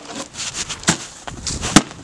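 Two loud, sharp hits, about a second in and again near the end, with scuffling and crunching between them: a bat striking cardboard boxes.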